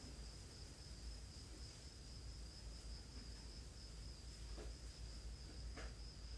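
Quiet room tone with a thin, steady, high cricket trill running throughout, over a low hum. Two soft clicks come near the end.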